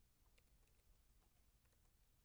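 Faint typing on a laptop keyboard: a run of irregular, scattered key clicks.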